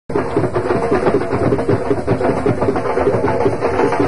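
Music of fast, dense drumming, cutting in abruptly at the very start.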